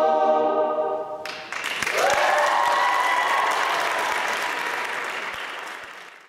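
Male a cappella group holding the final chord of the song, which stops a little over a second in, followed by audience applause with a whooping cheer that rises in pitch and then holds. The applause fades out near the end.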